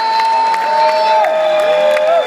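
Concert crowd cheering and clapping, with several long, held shouts from fans overlapping one another, each a little lower in pitch than the last.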